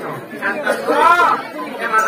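Speech: a voice talking into a microphone through a loudspeaker, with chatter underneath.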